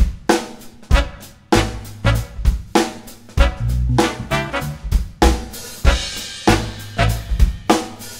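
Funk band playing an instrumental groove: a drum kit with snare, kick and hi-hat hits, over a bass line.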